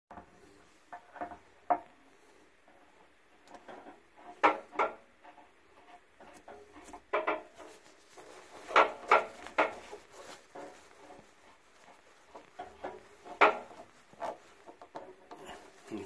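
Irregular metal knocks, clicks and rubbing from a hinged anode rod and its brass-capped steel nipple fitting being handled and threaded by hand into the top port of an electric water heater, with a few sharper clanks along the way.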